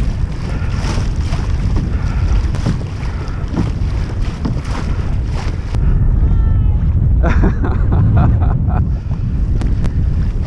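Wind buffeting the microphone of a camera mounted on a moving kayak, over water splashing and rushing along the hull.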